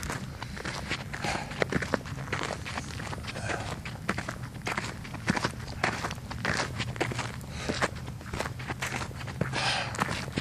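Footsteps of a person walking steadily over outdoor ground, with irregular short scuffs and crunches throughout and a low steady rumble underneath.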